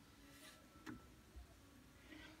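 Near silence: room tone, with a faint click a little under a second in and a fainter one about half a second later.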